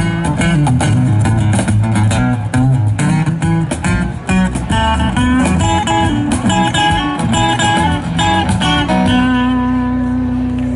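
A live band plays an instrumental passage: guitar picking a lead over a walking upright bass line, with cajón hits. About nine seconds in, the playing stops on one held low note.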